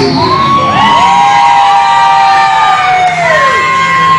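Siren-like sound effect in the song's backing track: several overlapping tones swoop up, hold steady and then slide down, over the music's continuing low end.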